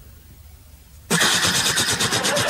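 Faint room hum, then loud audience applause cuts in suddenly about a second in: dense, rapid clapping from many hands.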